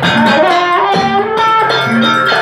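Traditional Banyuwangi gandrung dance music: a melody that slides from note to note over a steady, repeating drum pattern.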